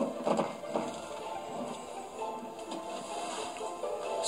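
Soft film-score music with steady held notes, with a few faint knocks in the first second.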